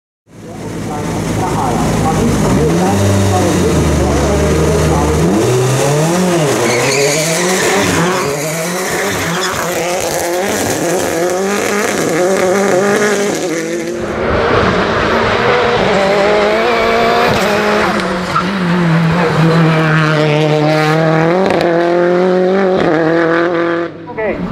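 Hill-climb race car engines at full throttle, revs climbing and falling again and again through gear changes. There is a sudden change of car about halfway through, then a steady high engine note followed by another run of rising revs.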